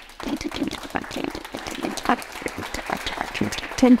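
Audience applauding, many hands clapping, with a voice starting briefly near the end.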